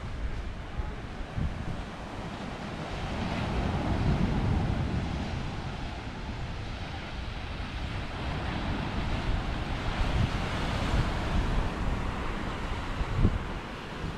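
Ocean surf on a sandy beach: waves breaking and washing up the shore, swelling twice, with wind buffeting the microphone and a brief low bump near the end.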